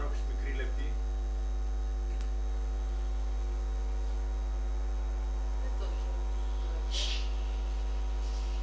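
Steady electrical mains hum with a row of buzzing overtones, and a brief high hiss about seven seconds in.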